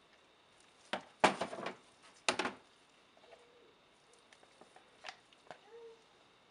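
Plastic soapmaking utensils, a spatula and pouring pitchers, knocking and clattering in two loud bursts about one and two seconds in, followed by a few lighter clicks and scrapes.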